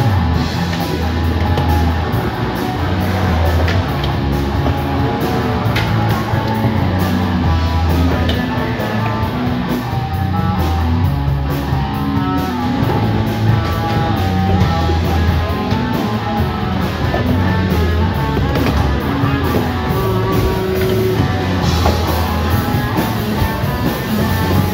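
Loud rock music with electric guitar and a drum kit, playing steadily with a regular beat.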